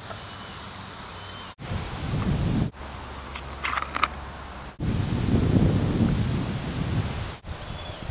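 Outdoor field ambience with wind rumbling on the microphone; the background noise changes abruptly several times. A few brief high chirps come near the middle.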